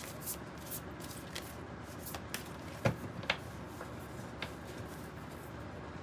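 A deck of oracle cards being shuffled by hand: soft flicks and riffles of the cards, with a couple of sharper taps about halfway through.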